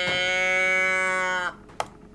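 Cow-moo toy can (a tip-over moo box) sounding one long moo that drops in pitch as it runs out, then a single short click.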